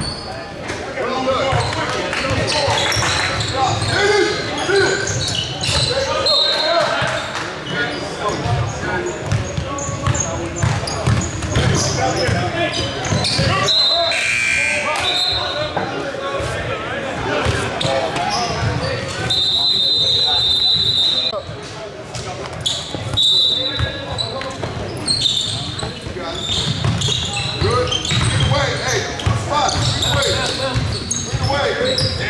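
Basketballs bouncing on a hardwood court amid players and spectators talking and shouting in a large gym hall. A steady high tone lasting about two seconds sounds about two-thirds of the way in.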